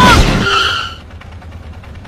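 Car sound effect: a car skidding with a brief tyre squeal, then dropping about a second in to a quiet low rumble.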